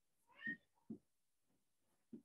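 A faint, short high-pitched animal call about half a second in, followed by a brief soft low knock.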